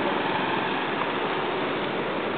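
Steady street noise of a passing procession crowd, with motor scooters running at idle among the walkers and cyclists.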